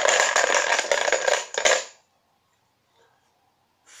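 Small numbered raffle counters clattering against each other in a box as a hand stirs through them, for about two seconds, then stopping as one is drawn.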